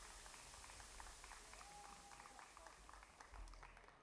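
Near silence: a faint low hum with faint scattered short sounds, such as distant voices, and one brief faint held tone near the middle.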